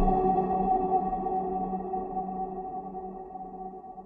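Electronic closing music ending on a held chord of several steady tones that rings on and fades away, dying out near the end.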